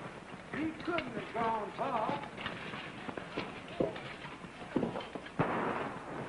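A person's voice making short, indistinct sounds in the first two seconds, then a few scattered knocks and a brief rush of noise near the end.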